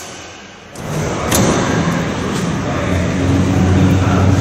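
A car bonnet shut with one sharp thud about a second in, followed by a loud, steady low mechanical hum.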